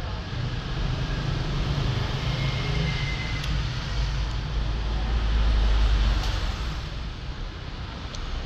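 Low, steady rumble of road traffic, swelling to its loudest about five or six seconds in as a vehicle passes, with a couple of faint clicks from the metal airbrush being handled.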